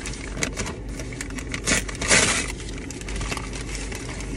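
Brown paper mailer bag rustling and crinkling as it is handled and opened, with a louder rush of paper noise about two seconds in.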